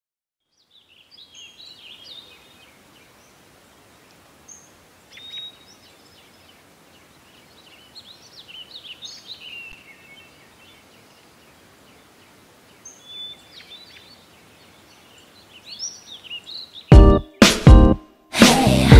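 Birds chirping, short runs of calls every few seconds over a faint hiss. Near the end, loud pop music cuts in with sharp, separate hits.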